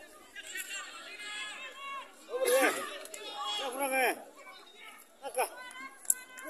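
Spectators on the sideline talking and calling out, several voices overlapping, with one voice loudest about halfway through.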